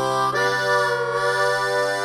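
Harmonica cupped against a vocal microphone, playing long held notes over a sustained low chord from the band; it moves to a new note about a third of a second in and wavers through a bend around the middle.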